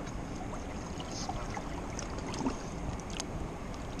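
River water washing steadily around shoreline rocks, with a few faint small splashes as a salmon is held by the tail in the current to revive it before release.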